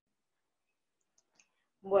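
Near silence, then a man starts speaking near the end.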